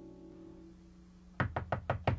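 The final held chord of a small band (saxophone, electric guitar and keyboard) fading out. About one and a half seconds in, a quick run of sharp knocks starts, several a second.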